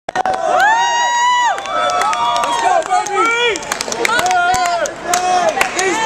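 Spectators at a boxing bout shouting and cheering, several voices yelling over one another in long, high-pitched calls, with scattered sharp knocks among them.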